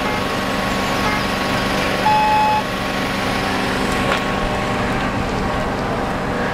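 A single electronic beep, one steady tone about half a second long, about two seconds in, over a steady low hum and outdoor background noise.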